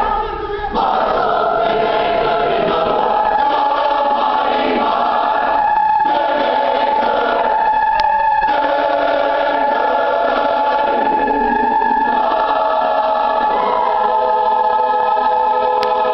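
High school mixed choir singing a gospel spiritual arrangement, holding long sustained chords in its closing bars, with a change of chord near the end.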